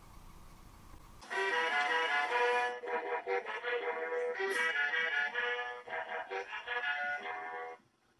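Electronic tune from a VTech learning toy's small speaker, a synthesized melody of short steady notes, typical of the jingle the toy plays as it shuts down. It starts about a second in after a brief quiet and stops suddenly near the end.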